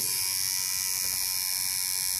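Coil tattoo machine buzzing steadily as the needle works into skin.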